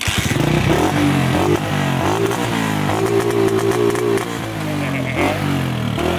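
1994 Honda CG 125 Titan's single-cylinder four-stroke engine catching right at the start, then revved up and down through its modified aftermarket exhaust.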